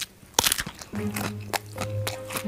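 Close-up crunchy bite and chewing of crispy fried squid with raw vegetables. A loud burst of crunches comes about half a second in, with more crunches near the end, over steady background music.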